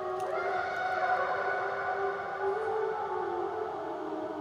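Speed-modded cassette player playing a tape of a single tone, its pitch set by push-buttons that switch in different tape-speed dials, heard as a sustained, warbly synth-like note through effects. The note glides up to a new pitch just after the start and steps to another pitch about two and a half seconds in.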